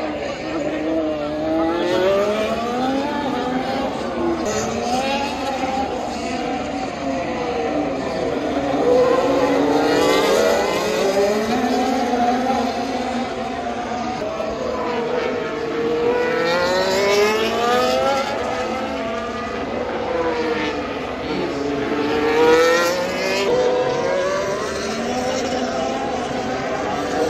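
Formula 1 cars lapping the circuit, one after another, their engine notes rising and falling over and over as they brake, shift and accelerate through the corners, often several at once.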